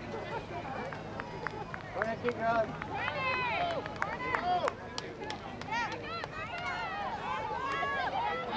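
Several voices shouting and calling out over one another from the sideline of a soccer game, louder from about two seconds in, with a few sharp ticks scattered through.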